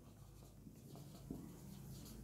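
Faint strokes of a marker pen writing on a whiteboard, with a couple of small ticks, over a low steady hum.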